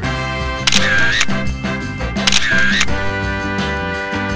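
Upbeat swing-style background music, with two camera-shutter sound effects about a second and a half apart as photos pop up on screen. Each lasts about half a second.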